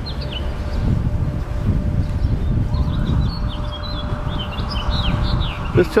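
Birds chirping in short, high calls over a steady low rumble.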